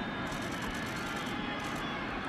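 Stadium crowd noise: a steady roar from a large crowd of spectators at a football game.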